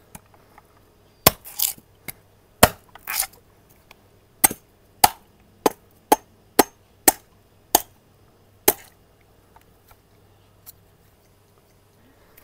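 A long knife chopping into the husk of a green coconut: about a dozen sharp strikes at an uneven pace, stopping about nine seconds in.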